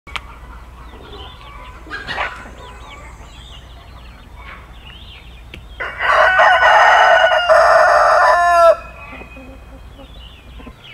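A rooster crowing once, a long crow of about three seconds starting around six seconds in, with faint chirping of small birds before it.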